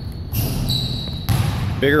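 Basketball dribbled on a hardwood gym floor, two bounces about a second apart.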